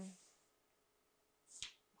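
Near silence in a pause between spoken phrases, broken by one short, sharp click about one and a half seconds in, just before the voice resumes.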